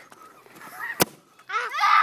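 A single sharp pop about a second in as a homemade water-bottle air rocket blasts off its PVC launcher: the pumped-up air bursts free once the pressure inside the bottle overcomes the duct-tape seal.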